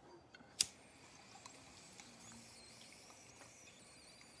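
A single sharp click about half a second in, a lighter being struck, followed by only faint low sound.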